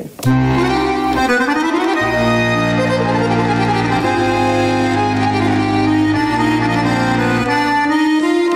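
Roland FR-4xb digital button V-Accordion playing its traditional accordion sound: slow held chords over bass notes, changing every second or two.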